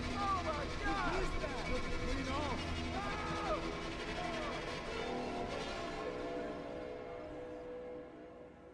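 Several voices screaming and wailing in the distance, overlapping, over a low rumble. The screams die away about four seconds in, and a sustained music pad takes over and fades out.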